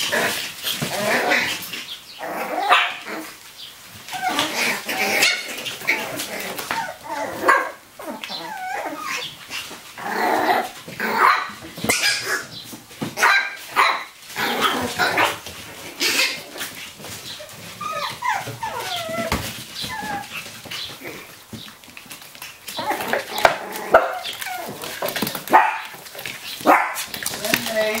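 A litter of eight-week-old Chihuahua-cross puppies playing together, giving many short yips and barks in quick succession.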